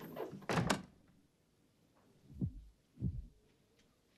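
Horror-film sound effects: a quick cluster of sharp cracks and knocks in the first second, then two deep, falling thumps close together near the end, like a slow heartbeat.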